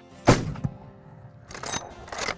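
A single loud thunk about a third of a second in, with a short ringing tail, over faint music. A softer rushing noise comes near the end.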